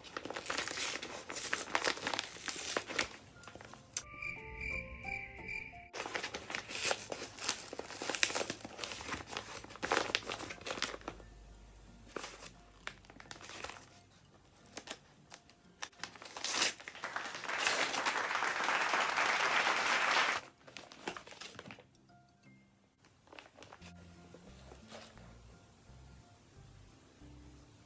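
A brown paper courier package being handled, crinkled and torn open by hand, with a long loud rip about two-thirds of the way through. Short bits of background music come in twice.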